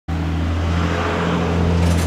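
School bus's diesel engine running with a steady low drone as the bus drives up.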